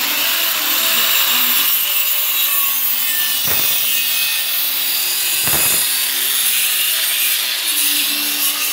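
A power tool working on wood or board, giving a loud, steady, high-pitched hiss with no stroke rhythm. Its sound changes briefly twice, about three and a half and five and a half seconds in.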